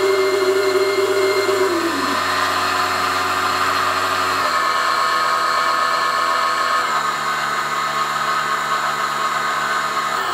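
Brushless motor driven by a VESC electronic speed controller, running with a steady electric whine and hum. Its pitch steps down about every two to three seconds as the duty cycle is lowered.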